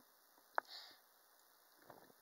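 A single short sniff about half a second in, starting with a small click, in an otherwise near-silent pause.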